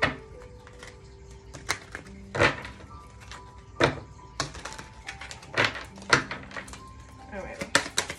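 A deck of oracle cards being shuffled by hand, with short bursts of cards sliding and slapping together every second or so. Soft background music of long held tones runs underneath.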